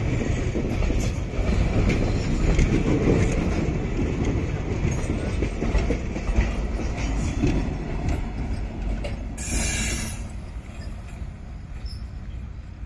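ICF passenger coaches rolling past close by, a loud rumble with wheels clattering over the rail joints. There is a brief high-pitched burst of noise about nine and a half seconds in. After that the rumble fades as the last coach moves away.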